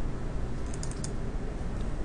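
A quick cluster of computer mouse clicks about three quarters of a second in, over a steady low room hum.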